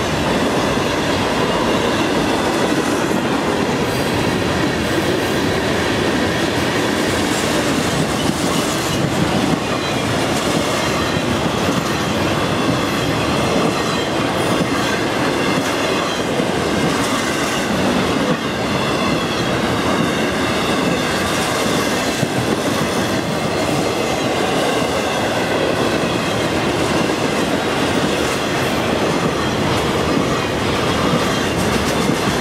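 Florida East Coast freight train's cars passing at speed: a loud, steady rumble of steel wheels on the rails, with a high, wavering wheel squeal over it.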